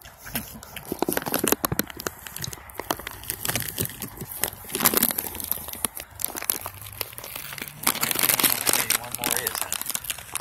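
Crinkling and rustling of a bag of peanuts as goats nose at it, with crunching as the goats chew peanuts; a steady run of irregular crackles, busiest near the middle and near the end.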